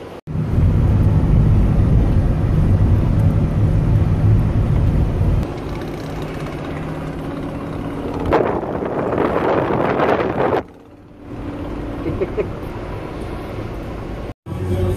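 Road and engine noise inside a moving car's cabin. It is a heavy low rumble for the first few seconds, then steadier and quieter. A louder rustling noise, like the phone being handled near the microphone, comes in about eight seconds in and stops abruptly a couple of seconds later.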